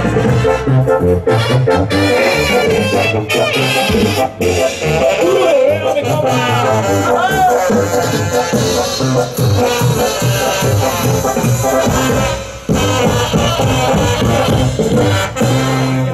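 Live Mexican banda playing an instrumental stretch of a song: brass over a pulsing tuba bass line and drums, with a brief drop in level about three-quarters of the way through.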